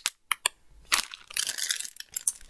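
Clear plastic packaging crinkling and crackling as it is handled close to the microphone: a few sharp crackles, then a denser run of crinkling in the second half.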